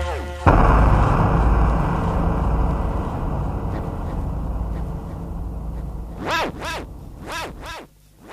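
Closing passage of an electronic track: a sudden loud crash of noise with a low bass underneath starts about half a second in and fades away slowly. Near the end, a run of short pitched calls begins, each rising and falling in pitch.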